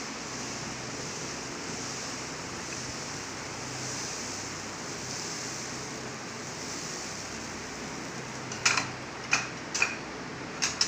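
A steady hiss, then three sharp metal clinks near the end as a steel ladle is set down in a steel pot of dosa batter.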